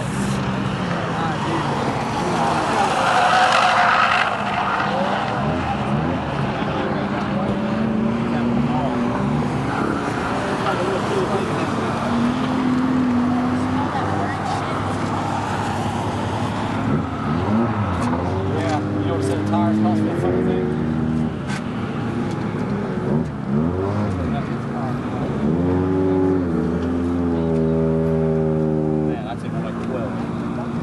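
Track-day cars lapping a racing circuit, heard from the spectator stands: engines rev up and down as they pass, one passing loudly a few seconds in. Near the end one engine climbs in pitch in repeated steps as it accelerates through the gears.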